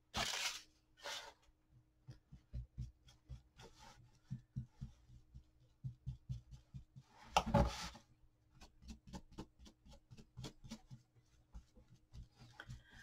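Quiet, irregular taps and scratches of a paintbrush dabbing antique wax onto a paper-covered board. Two louder rustles come through, one right at the start and one about seven and a half seconds in.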